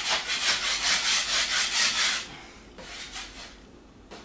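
A metal drywall knife scraping dried joint compound off a drywall ceiling in quick back-and-forth strokes, about five a second. The strokes stop about two seconds in, and a few fainter scrapes follow. This is knocking down the high spots of the mud before wet sanding.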